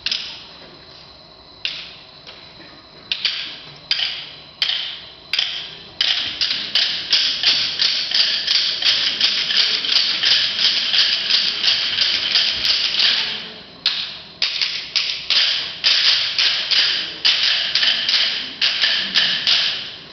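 Sharp percussive strikes in a rhythm: a few single hits spaced a second or so apart, then a quick steady beat of about three hits a second that breaks off briefly past the middle and starts again.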